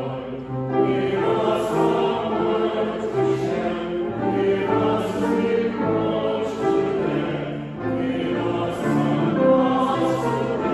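A small choir singing a hymn with grand piano accompaniment, moving through a series of held notes.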